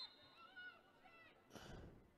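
Near silence on the pitch, with a faint distant high shout from a player about half a second in and a soft breathy rush near the end.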